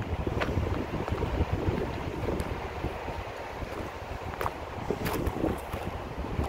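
Wind buffeting an outdoor microphone: a steady low rumble, with a few faint clicks.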